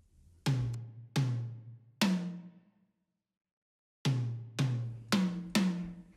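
Cartoon sound effect of a hammer tapping an excavator's caterpillar tread. There are three low, drum-like knocks, each dying away, then a pause of about a second and a half, then four more quicker knocks.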